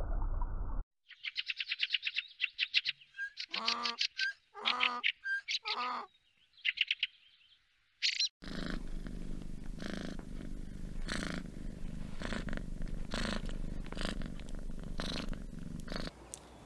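A donkey braying: rapid high-pitched wheezing in-breaths alternate with three lower hee-haw calls. This is followed by a cat purring steadily, its purr swelling gently about once a second with each breath.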